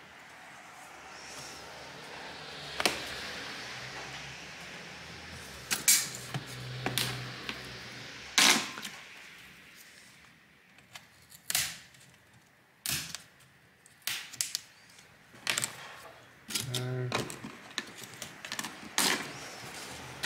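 Plastic trim clips on an HP ENVY x360 15 laptop display clicking and snapping as they are pried loose, more than a dozen sharp clicks at irregular intervals, over the rustle of hands and tools on the panel.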